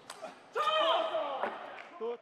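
A loud shout, falling in pitch and lasting about a second, the kind a table tennis player gives on winning a point, preceded by a couple of light clicks.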